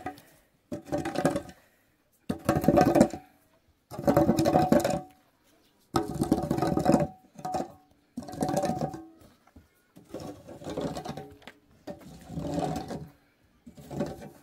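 Long-handled metal hoe scraping across a dirt and dung floor, in repeated strokes about every one and a half to two seconds, about eight in all.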